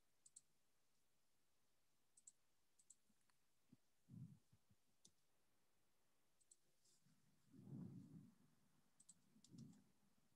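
Near silence with faint scattered clicks and a few soft low bumps, the loudest of them about three-quarters of the way through.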